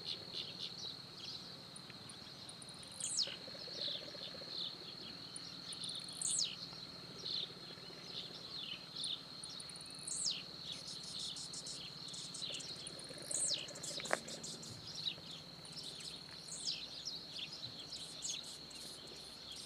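Wild birds calling over a steady, high-pitched insect drone. One bird gives a high call that sweeps downward, repeated about every three seconds, among other short chirps. A single rising whistle comes about 14 seconds in.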